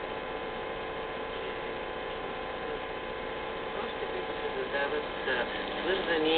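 Crystal radio receiver played through a cassette recorder's amplifier, giving a steady hum and hiss of electrical interference picked up from household appliances while the variable capacitor is turned. Faint voices of an AM station begin to come through near the end.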